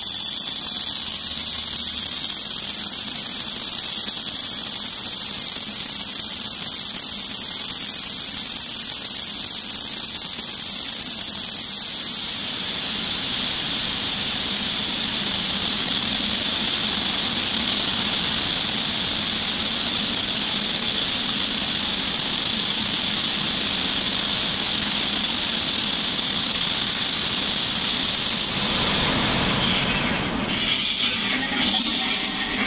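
Synthesised granular texture from Reason's Fritz granular engine: a dense, steady hiss-like wash with a faint high whistling tone running through it. It grows louder about twelve seconds in and breaks up just before the end.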